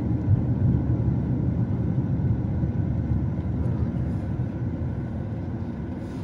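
Car cabin noise while driving: a steady low rumble of engine and tyres on the road, easing a little toward the end.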